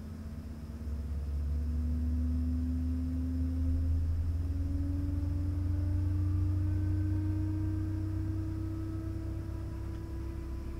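Embraer ERJ-135's Rolls-Royce AE 3007 turbofan spooling up during engine start, heard inside the cabin: a low rumble that swells about a second in, under several tones that climb slowly in pitch.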